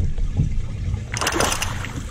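A short splash of water about a second in, as a flounder is scooped into a landing net at the boat's side, over a steady low rumble of wind on the microphone.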